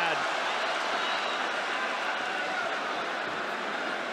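Large arena crowd cheering in a steady roar of many voices, reacting to a fighter being knocked down.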